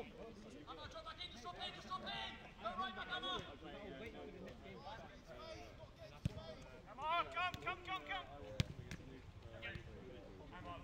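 Players shouting and calling to each other across an outdoor football pitch, loudest about seven seconds in. Two sharp thuds of the ball being kicked come at about six and eight and a half seconds.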